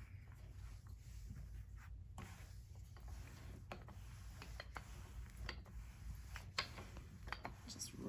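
Wooden rolling pin rolling pizza dough across a floured silicone mat: faint rubbing with scattered light clicks, over a low steady hum.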